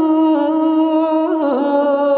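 Ethiopian Orthodox chant: a single voice holding long notes with small wavering turns, stepping down slightly in pitch about three-quarters of the way through.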